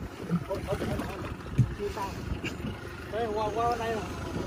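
Steady low rumble and wind noise on a small boat at sea, with a few handling knocks and a man's voice briefly near the end.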